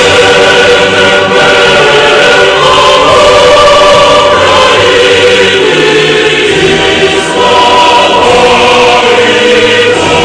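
Choral music: a choir singing held, sustained chords.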